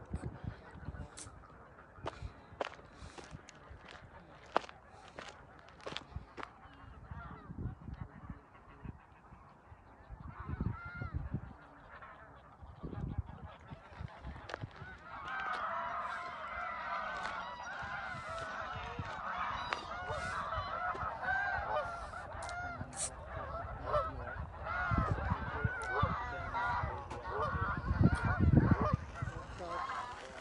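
A flock of geese honking, faint and sparse at first, then a dense chorus of overlapping calls from about halfway in as the flock comes close. Footsteps on a gravel path tick through the first half, and low thumps on the microphone are loudest near the end.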